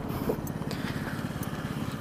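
Small 125cc scooter engine running while riding, with a rapid even pulsing under road and wind noise.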